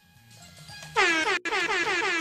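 An air horn sound effect blasts about a second in, over faint background music, marking a correct answer in a quiz.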